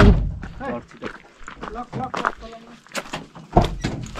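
Men's voices talking and calling out in short bursts, with a dull thump right at the start and another near the end.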